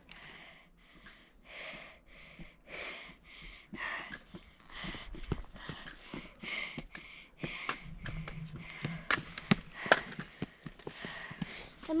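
A person breathing hard close to the microphone, about one breath a second, with scattered light clicks.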